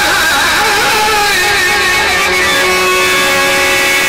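A man singing a Sindhi song into a microphone with live instrumental accompaniment; the melody wavers in ornaments at first, then settles into long held notes.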